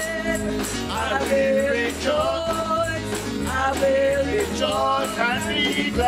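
Live gospel praise song: a woman's lead vocal over a band with drums, and a tambourine struck in time to a steady beat.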